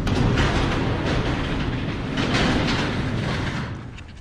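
Metal overhead shed door being raised by hand, a continuous rattling that dies away near the end.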